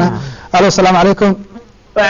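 A person speaking in a studio, with a short pause near the end.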